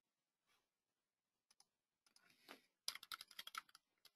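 Computer keyboard typing, faint: a quick run of about ten keystrokes near the end, typing a web address into a browser's address bar.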